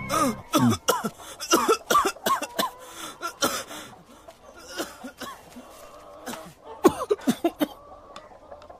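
A person coughing in repeated hoarse fits, the coughs coming thick and fast in the first few seconds and again in a short cluster near the end.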